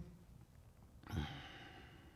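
A man's soft exhaled breath, a sigh picked up by a microphone, starting about a second in and fading out; the rest is quiet room tone.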